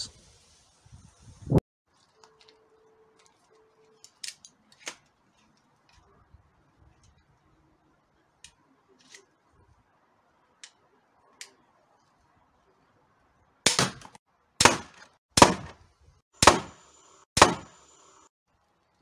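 Pistol crossbow shooting standard aluminium bolts into an LCD TV: one sharp crack about a second and a half in, faint clicks as the crossbow is handled and reloaded, then five sharp cracks about a second apart near the end.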